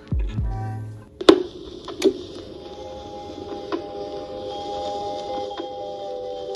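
Music stops about a second in, then two sharp clicks, the first the loudest, as the stylus of a Crosley Cruiser Deluxe suitcase turntable is set down on a vinyl record. A record then starts playing softly with held notes and faint ticks, through the turntable's built-in speakers.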